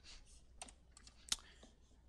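Faint, scattered clicks of a computer keyboard and mouse, a handful in all, the loudest a little past halfway.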